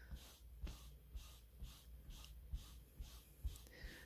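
Damp scrap of velvet brushed back and forth over a velvet curtain's pile: faint soft rubbing strokes, about two a second, to lift the crushed pile and let it lie back down.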